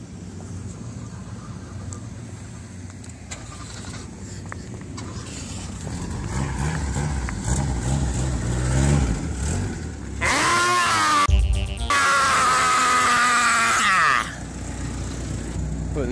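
A car running close by, then about ten seconds in, loud screaming for about four seconds with a brief break partway through.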